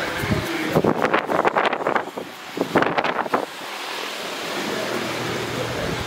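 Rushing noise from a handheld microphone carried along while walking, with a few brief muffled voice sounds in the first half.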